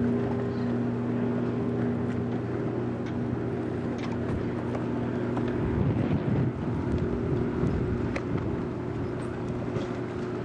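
A boat engine runs at a steady pitch under wind on the microphone and water noise. About six seconds in there is a louder rush of wind or spray.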